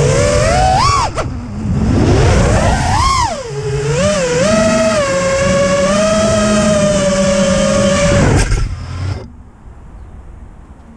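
The four brushless motors and propellers of a five-inch FPV quad whine, heard from a camera mounted on the quad. Their pitch rises and falls with the throttle, climbs sharply about three seconds in, then holds steady. The motors stop about nine seconds in, with the quad at rest on the ground.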